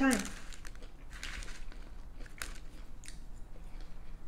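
A person chewing a mouthful of loaded tater tot, a run of short, irregular chewing and crunching sounds close to the microphone.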